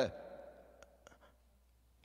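A man's voice trails off on a drawn-out word at the start, then a pause with a couple of faint clicks, fading into near silence.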